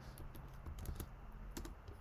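Faint typing on a computer keyboard: a scattering of irregular keystrokes as a web address is entered into a browser's address bar.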